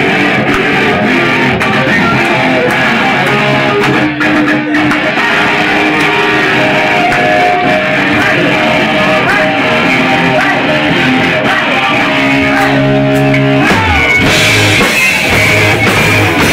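Punk rock band playing live: electric guitars over a drum kit, loud and dense. About fourteen seconds in the playing turns brighter and harder.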